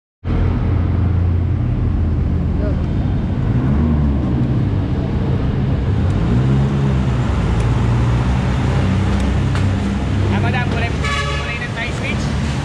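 Honda Click motor scooter engine running, a steady low rumble that rises and falls in pitch twice, about four seconds in and again about six seconds in. A voice near the end.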